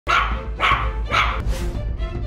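A puppy barking three times, about half a second apart, over light background music.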